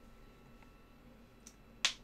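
Quiet room tone, then two short clicks near the end, a faint one followed by a sharper one, from computer controls being pressed.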